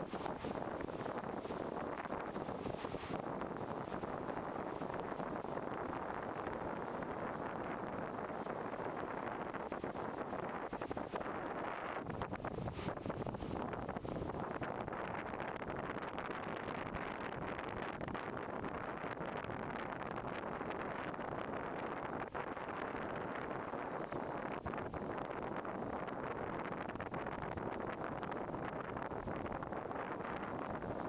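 Steady wind blowing across the microphone, an even rushing noise with no break.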